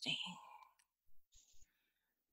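A soft voice trails off just after the start, followed by faint breathy hiss and a few small clicks close to the microphone.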